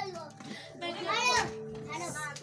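Children's voices: a child's high-pitched speaking or calling out, starting about a second in.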